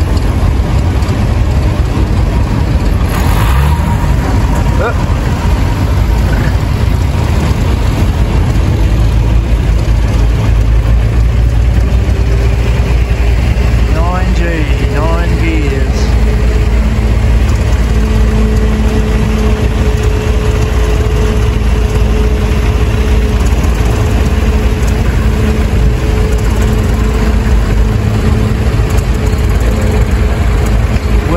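Vintage tractor engines running steadily at low speed as the tractors pass, a loud, deep, continuous rumble. About twelve seconds in, a steadier, higher engine note joins it.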